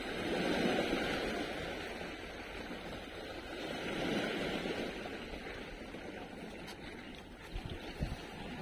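Small sea waves washing against shoreline rocks, a steady wash that swells twice. A few light knocks come near the end.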